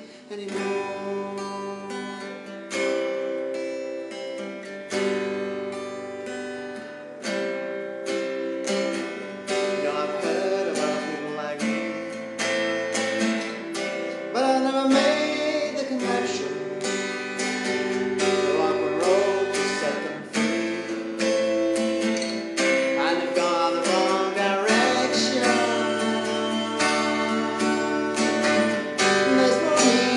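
Acoustic guitar strummed in a steady rhythm, its chords changing every couple of seconds, with a voice singing over it from about ten seconds in.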